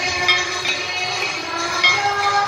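Hindu aarti devotional singing with long held notes, accompanied by ringing bells and clinking cymbals.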